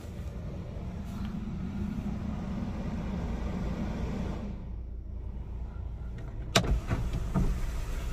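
Suzuki Vitara's 1.4 Boosterjet turbo four-cylinder petrol engine idling just after a keyless start, heard from inside the cabin as a steady low rumble. Over it runs a steadier electric hum for the first four and a half seconds. About six and a half seconds in there is a single sharp click.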